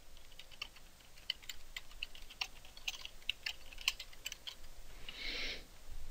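Typing on a computer keyboard: a fairly quiet run of irregular keystrokes as words are keyed in, with a brief soft hiss about five seconds in.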